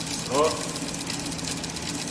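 Automotive ignition system training board running, giving a rapid, even ticking buzz.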